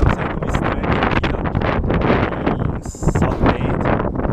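Wind buffeting the microphone of a handheld action camera: a loud, uneven rumble.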